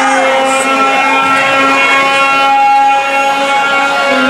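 A loud, sustained electronic drone from an effects-pedal rig: several steady held tones, with pitch glides sweeping up and down over them as the pedal knobs are turned.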